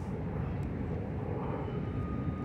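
A steady low rumble of distant engine noise, with a faint thin whine coming in near the end.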